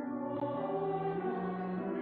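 Choir singing long held notes with a small string orchestra accompanying, the chords moving slowly.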